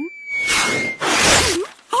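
Two whooshing sound effects of a kicked soccer ball flying through the air, each about half a second long, the second as the ball punches through a newspaper. A brief startled "oh" comes at the very end.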